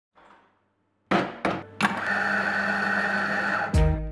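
Three sharp clacks, then about two seconds of a steady mechanical whirr with a steady hum from a coffee machine; a music track starts with a low note near the end.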